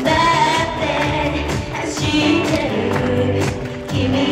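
Live J-pop performance: female vocalists singing together into microphones over a recorded backing track with a steady drum beat and bass.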